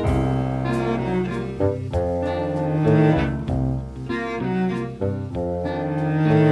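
Contemporary chamber-orchestra music led by low bowed strings. Double bass and cello hold sustained notes under other pitched instruments, with new notes entering every second or so.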